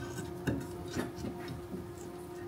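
Light metal clicks and knocks as a fourth-axis rotary attachment is slotted into place on the bed of a Makera Carvera Air desktop CNC, with two sharper knocks about half a second and a second in, over a steady low hum.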